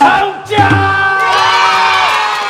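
A small group of people cheering together: about half a second in their voices rise into one long, drawn-out shout of 'whoa' that is held to the end.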